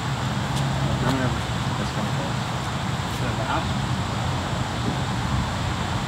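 Steady low outdoor rumble, like wind on the microphone or distant road traffic, with faint voices now and then.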